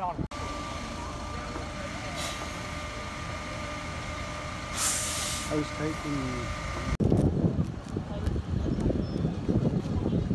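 Steady engine idling, with a short, sharp hiss of air about five seconds in and a fainter one earlier, typical of a bus's air brakes releasing. After a cut near the end, people talk over the vehicle noise.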